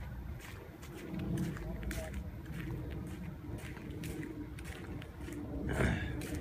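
Footsteps on a brick-paved walkway at about two steps a second, under low, indistinct voices, with a brief louder sound near the end.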